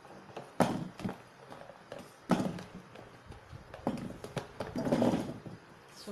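Small potatoes tipped from a plastic container into a pot, knocking and tumbling in a few separate bumps, the sharpest about half a second and two seconds in.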